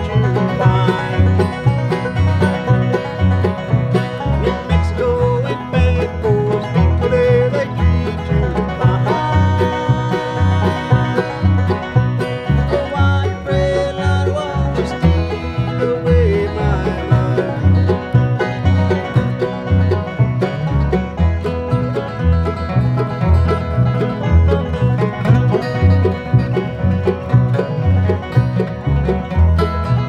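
Bluegrass band playing: banjo, mandolin, two acoustic guitars and upright bass, over a steady, evenly repeating bass beat.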